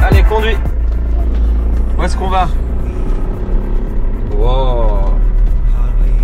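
Camper van engine running with a steady low drone, heard from inside the cab. Over it, a toddler makes three short babbling calls.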